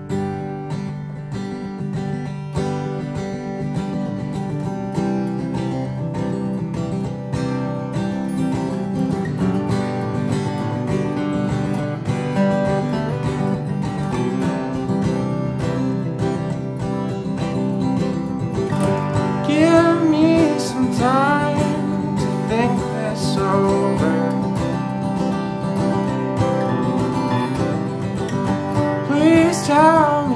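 Acoustic folk string band playing an instrumental intro: acoustic guitars strumming and picking a steady rhythm, starting suddenly out of silence. A sliding melodic lead line comes in about two-thirds of the way through.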